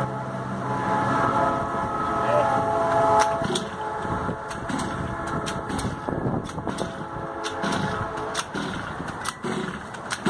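Small gas engine of a large-scale RC buggy being pull-started and not staying running: a steady drone for the first few seconds, then rough, irregular turning over. The owner suspects the engine is flooded.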